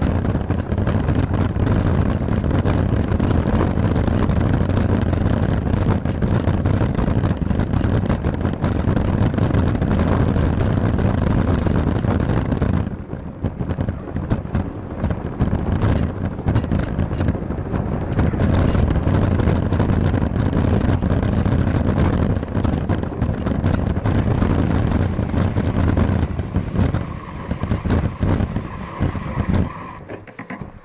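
Wind rushing over the microphone of a bicycle-mounted action camera, with the bicycle's tyres rolling on pavement. The noise dips for a moment about 13 seconds in and tails off near the end.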